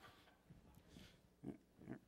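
Near silence: room tone with a few faint, brief sounds, the loudest about one and a half seconds in.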